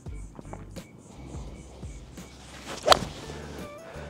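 A golf six iron striking the ball off grass: one sharp impact about three seconds in, over steady background music.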